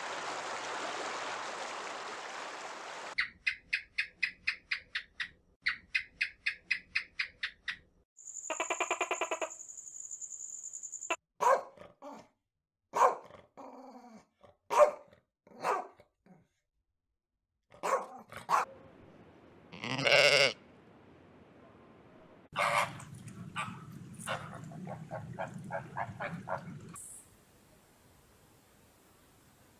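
A run of separate animal sound clips. It opens with a rushing noise, then comes rhythmic chirping and a held pitched call. A dog barks several times in single sharp barks through the middle, followed by a longer loud call and a cluster of further calls over a low hum.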